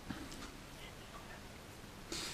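Quiet room tone with a few faint, irregular ticks.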